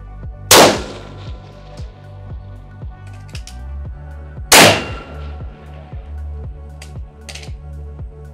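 Two rifle shots about four seconds apart, each a sharp crack with a short ringing tail, fired from a scoped precision rifle on a tripod. Background music with a steady beat plays throughout.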